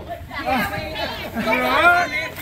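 Overlapping voices of spectators talking and calling out, several at once.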